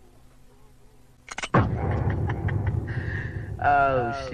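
A faint hum, then a sudden loud rumbling noise starting about a second and a half in. A steady high tone joins it, and a falling, voice-like pitched sweep comes near the end.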